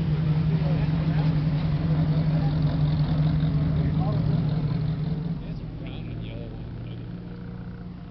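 A car engine running at a steady low idle, loudest for the first five seconds, then dropping off and settling lower.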